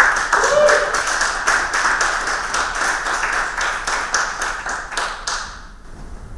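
Audience applauding, breaking out all at once and dying away about five and a half seconds in.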